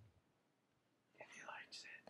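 Near silence, then faint whispering in the second half.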